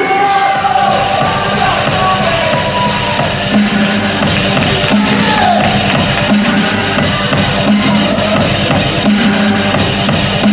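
Loud rock music with a steady beat and guitar.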